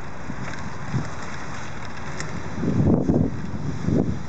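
Wind rushing over a handheld camera's microphone as it moves along on a bicycle: a steady rush, with a louder rumbling buffet in the second half.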